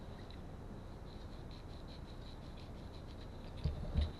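Faint light clicks and scrapes of a small plastic Bluetooth helmet headset being handled, with a soft knock near the end as a small screwdriver is picked up off the table.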